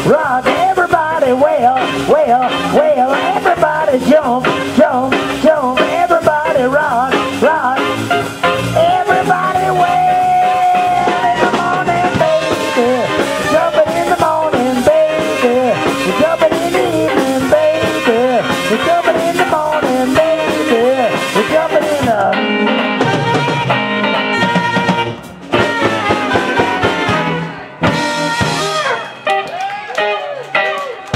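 Live blues band playing an instrumental passage: saxophone lines over electric guitar, bass and drums, with one long held note about ten seconds in. Near the end the band breaks off briefly a few times.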